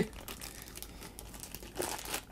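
Soft crinkling and crackling of a rolled paper art print being handled and unrolled.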